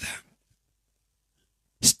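A man's voice speaking close into a handheld microphone: the tail of one sentence, then about a second and a half of silence, then the start of the next word with a sharp hissing 's'.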